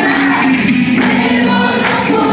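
A congregation and worship band sing a Spanish gospel song together with live instruments. Sustained sung notes run over the band, with a few sharp percussive hits.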